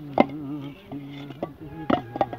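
Hammer tapping brick tiles down into a mortar bed: three sharp knocks, one shortly after the start and two close together near the end, over a steady buzz whose pitch wavers slightly.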